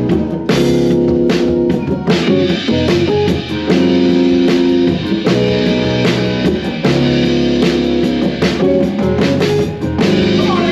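Live gospel church band playing: drum kit with regular cymbal strokes, held keyboard chords and guitar.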